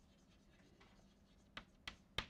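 Chalk writing on a blackboard: faint scratching strokes, with two sharper taps near the end.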